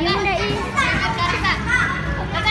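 Children's high-pitched voices shouting and calling out over one another.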